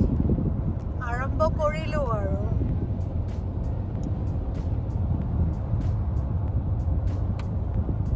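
Steady low road rumble of a car driving at highway speed, heard from inside the cabin. A voice comes in briefly about a second in, and faint light ticks are scattered through the second half.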